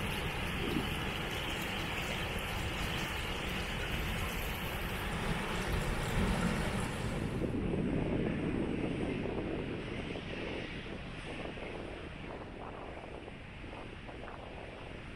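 Steady rushing of a small creek with wind on the microphone. About halfway through, the sound switches abruptly to a quieter outdoor wind ambience with a low rumble that fades away toward the end.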